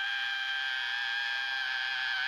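A woman's voice belting one long, high sung note into a microphone, held steady in pitch with nothing else audible beneath it.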